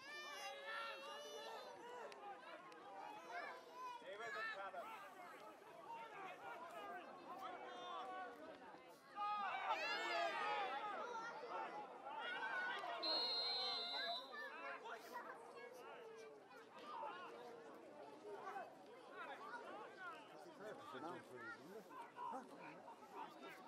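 Voices of players and spectators calling and chattering around a Gaelic football pitch, louder shouting for a few seconds near the middle, with a brief high whistle note just after.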